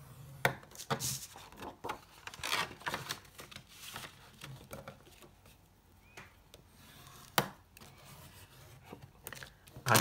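A plastic bone folder scrapes along the groove of a scoring board, scoring a fold line into thick cardstock. The card is then folded and pressed flat, with a few sharp clicks of the tool and card against the board.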